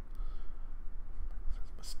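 A pause in a man's talk, filled by a steady low hum and faint scratchy noise. Speech resumes near the end with a hissed 's'.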